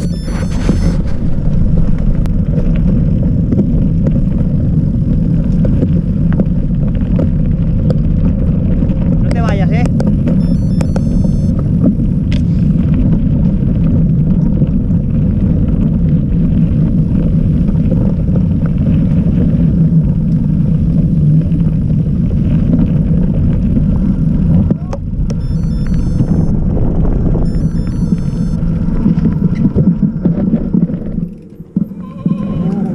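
A mountain bike ridden over a dirt and gravel trail, heard from a camera on the rider: a steady, heavy rumble of tyres and bike over the ground, mixed with wind buffeting the microphone. It eases a little about 25 seconds in.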